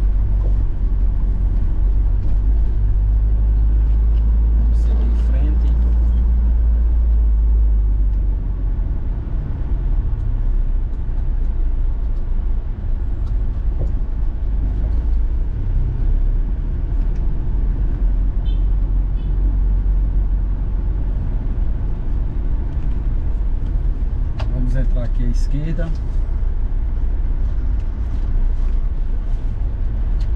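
Troller 4x4's engine and road noise heard from inside the cabin while driving through town: a steady low rumble, a little louder for the first several seconds, then easing off slightly.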